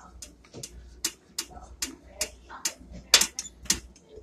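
Light clicks and taps, irregular at roughly three a second, from refrigeration fittings being handled and screwed together: a stop-leak injector going onto the refrigerator's low-side service valve. A low steady hum runs underneath.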